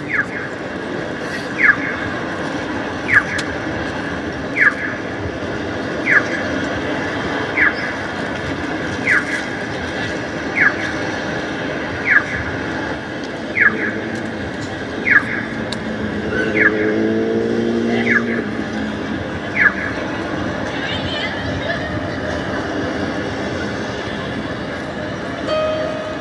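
A short, high, downward-sliding chirp repeating evenly about every second and a half, fourteen times, then stopping about twenty seconds in, over a steady hum of outdoor city background.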